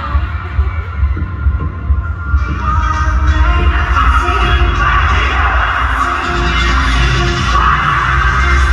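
Arena sound system playing music with a fan-made video on the big screen, caught on a phone microphone with a heavy low rumble. A couple of seconds in, a brighter, noisier sound swells up over it: the audience cheering.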